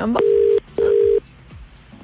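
Telephone ringback tone heard down the line: one double ring, two short steady tones with a brief gap, the call ringing before it is answered. This is the Australian double-ring cadence.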